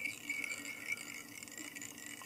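Faint, irregular light ticking of fly-tying thread paying off a bobbin as it is wrapped around a hook shank, over a faint steady hum.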